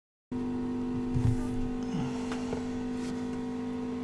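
Steady low electrical hum, with a few soft handling knocks and rustles a little over a second in.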